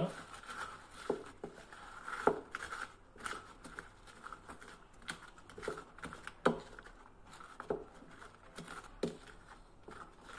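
Wooden spoon stirring and folding crushed Oreo cookies into a thick cream mixture in a glass bowl: soft wet scraping, with irregular light knocks of the spoon against the glass about once a second.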